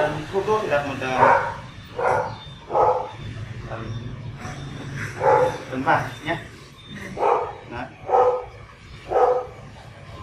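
A dog barking in short single barks, about one a second with a pause midway, over a low steady hum.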